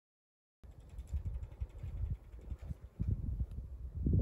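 Low, gusting rumble of wind buffeting the microphone, starting about half a second in after a moment of dead silence.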